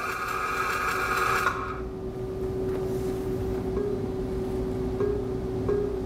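Simulated flux-cored arc welding sound from a virtual welding trainer, with the arc held long on purpose to cause surface porosity. A steady hiss cuts off about a second and a half in as the pass ends, leaving a steady hum.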